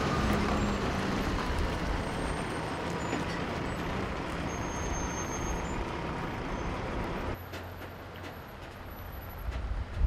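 Diesel semi-truck pulling a loaded lowboy trailer past at road speed: steady engine and tyre noise. The noise drops off suddenly about seven seconds in to a quieter outdoor background.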